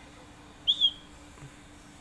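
Small plastic toy whistle blown once: a short, high-pitched toot that pulses twice in quick succession, about two-thirds of a second in.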